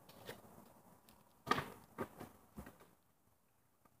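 A few faint rustles and light knocks from someone moving about on dry-leaf-covered ground, tossing out a plastic target. They die away after about three seconds.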